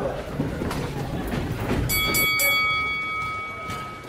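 Boxing ring bell struck three times in quick succession about halfway through, its tone ringing on and fading over a second and a half, over a low rumble.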